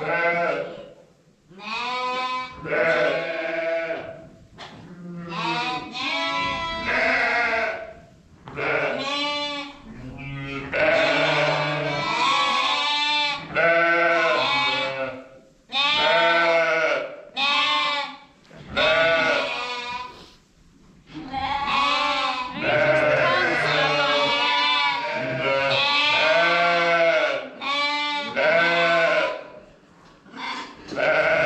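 Lambs bleating again and again, one wavering call after another, some overlapping, with short pauses between calls.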